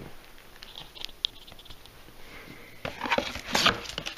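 Cardboard shipping box being opened by hand, its flaps and packing rustling loudly from about three seconds in, after a few faint clicks and scuffs.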